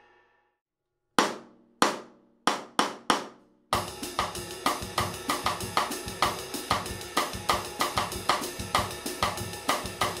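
Drum kit: the last strokes of a slow take die away into about a second of silence, then five count-in strokes, two spaced and three quicker. From a little under four seconds in comes a bossa nova cross-stick groove at tempo, a baião-based pattern with cross-stick clicks on the snare under a steady stick pattern on the cymbals.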